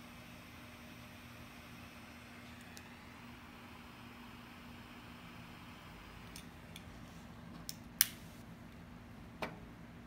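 Butane torch lighter flame hissing faintly while toasting a cigar's foot; the hiss fades out about three seconds in. Later come a few sharp clicks, the loudest about eight seconds in and another shortly after.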